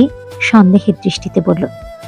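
A voice narrating a story in Bengali over background music with long held notes.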